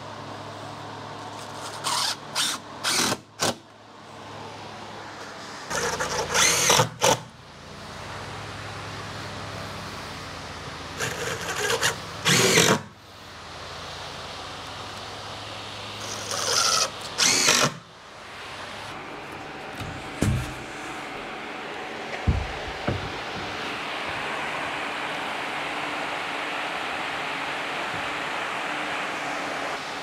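Cordless drill/driver driving screws into pressure-treated lumber and plywood in short runs of one to two seconds each, repeated several times, with a couple of knocks later on.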